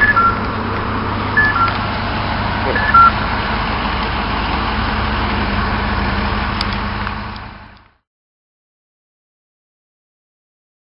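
A vehicle engine hum in street traffic, with a two-note falling electronic beep repeating about every second and a half during the first three seconds. The sound fades out about seven and a half seconds in, leaving silence.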